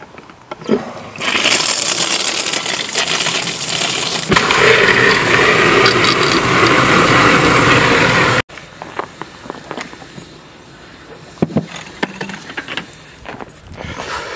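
Water running from an outdoor spigot into a plastic water jug. The noise starts about a second in, grows fuller and louder a few seconds later, and cuts off abruptly a little past the middle. Quieter scattered knocks and handling sounds follow.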